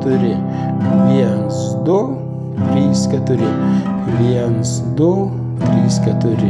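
Nylon-string classical guitar strummed in a steady rhythm, chords ringing on between the strokes, with a sharper stroke about every second and a half.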